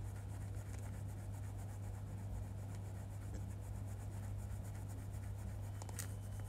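Toothbrush scrubbing teeth in quick, even strokes, faint over a steady low electrical hum.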